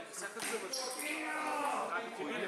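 Table tennis rally: a few sharp clicks of the celluloid ball off paddles and the table in the first second, with people talking in the hall.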